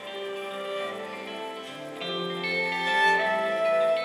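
Instrumental passage of a folk-pop song played live on guitar and bowed cello, with sustained cello notes under the guitar. It grows louder about halfway through.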